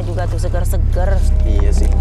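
A motor scooter's engine running close by: a steady low rumble that grows slowly louder.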